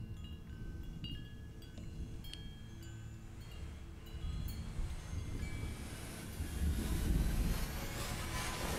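Wind chimes tinkling, with scattered short high ringing notes, over a low rumbling noise that grows louder in the second half.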